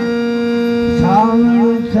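Harmonium holding steady notes as accompaniment to a male folk singer, whose voice slides up in pitch about a second in.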